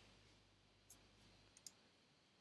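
Near silence with two faint, brief clicks, one about a second in and another shortly after, typical of a computer mouse being clicked.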